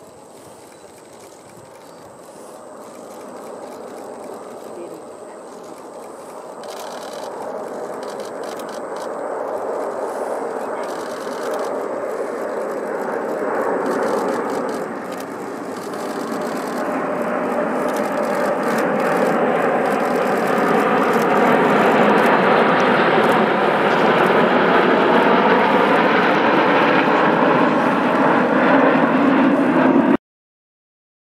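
Jet engine noise from a six-ship formation of Kawasaki T-4 jet trainers of the Blue Impulse team. It builds steadily from faint to loud as the formation closes in, and is loudest over the last ten seconds as the jets come close.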